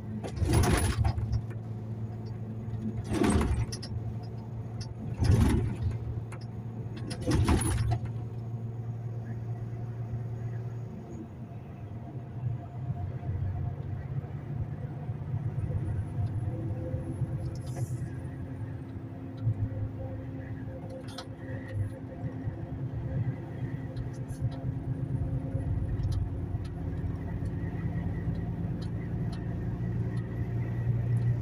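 Inside a lorry cab at motorway speed: steady diesel engine drone and road noise, with the engine note changing about a third of the way through. Four loud short bursts of noise come about two seconds apart in the first eight seconds.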